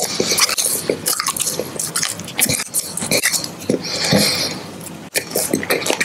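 Close-miked mouth sounds of biting and chewing a sugar-coated gummy lollipop, heard as irregular short clicks.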